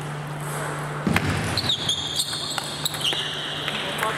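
Table tennis ball clicking off the rackets and table in a rally, a quick run of sharp knocks starting about a second in, with high shoe squeaks on the hall floor through the second half over a steady low hum.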